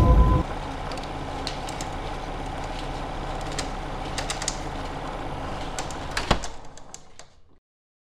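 A loud music hit cuts off about half a second in. Then a steady low hum with scattered clicks and crackles runs on, with one sharp thump about six seconds in, and fades out to silence shortly before the end.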